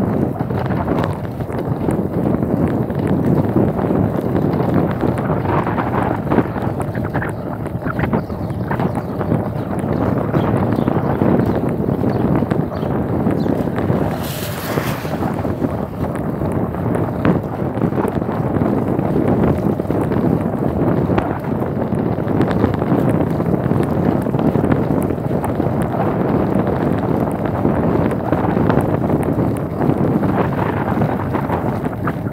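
Wind buffeting the microphone of a camera carried on a moving bicycle, a steady loud rumble throughout, with a brief hiss about halfway through.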